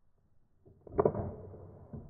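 A single BB gun shot about a second in, the BB striking a pair of plastic safety glasses on a wooden table; a sharp crack that trails off over the next second.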